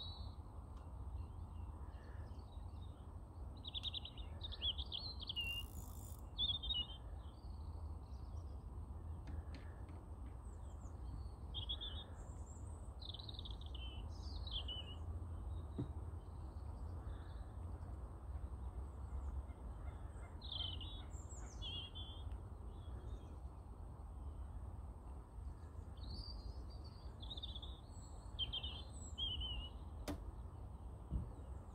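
Small birds chirping and singing in short repeated phrases throughout, over a steady low rumble.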